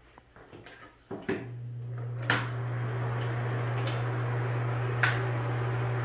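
A fan motor switching on with a click about a second in, then running with a steady low hum and a rush of moving air that builds over the next second and holds even. A couple of sharp clicks sound over it.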